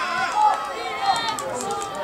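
Several voices shouting and calling out over one another in the open air, with no clear words.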